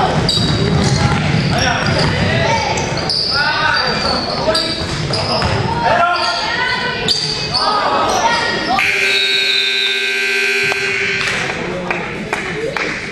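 Scoreboard buzzer sounding one steady tone for about two seconds, about nine seconds in, as the game clock runs out to end the period. Around it are basketball dribbling and shouting voices in a reverberant gym.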